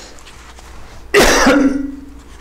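A man clears his throat with a single harsh cough about a second in, ending in a short hum.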